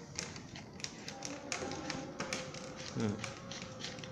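Irregular light plastic clicks and taps as the plastic locking nut of a stand fan's rear guard is screwed on clockwise by hand.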